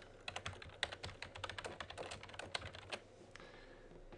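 Faint computer-keyboard typing: a quick, uneven run of key clicks typing out a short phrase, stopping about three seconds in.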